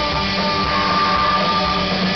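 Psychobilly band playing live with amplified electric guitar, upright double bass and drums, with no vocals. One high note is held for about a second in the middle.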